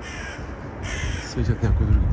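Harsh bird calls: a short one at the start and a louder one about a second in, over a steady low rumble of street traffic.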